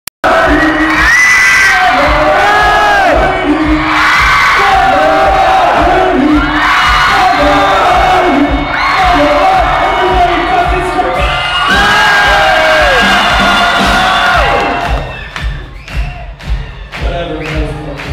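Large concert crowd cheering, whooping and shouting loudly, many voices at once. The noise drops away about fifteen seconds in, leaving a few sharp hits.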